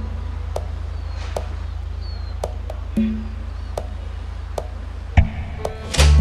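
Background drama score: a steady low bass drone under a soft ticking beat of about two to three ticks a second, with a plucked note at the start and again about three seconds in. Near the end a sharp hit sounds and the drone cuts off.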